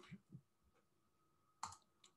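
Near silence, then a single sharp click at the computer about one and a half seconds in.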